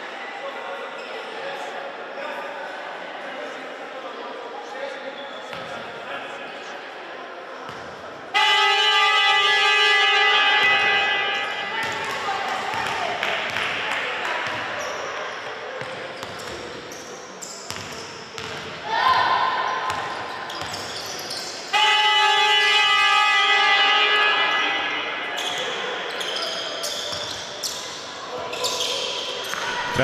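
A gym scoreboard horn sounds two long, steady blasts, each about two and a half seconds, the first about eight seconds in and the second some thirteen seconds later. They signal the end of a timeout.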